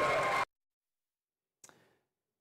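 A man speaking into a handheld microphone over a gym PA, cut off abruptly about half a second in, then dead silence broken only by a brief faint click near the end.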